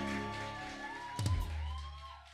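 A live band's final chord ringing out and fading, with a deep low note hit just over a second in and a few short wavering high tones over the dying sound.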